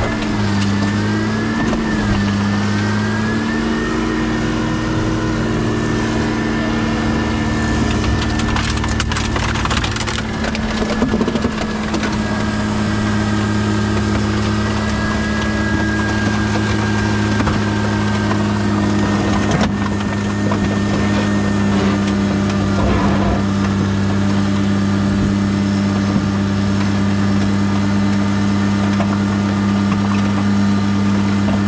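Hydraulic alligator shear's power unit running steadily, its hum dipping in pitch and settling in the first few seconds. Scrap metal crunches and cracks in bursts about eight to twelve seconds in, with a few more cracks later.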